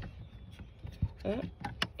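A few small sharp plastic clicks and taps as a blade fuse is pushed at a slot in a car's fuse box and fails to seat, which she takes as a sign that it is probably the wrong way round.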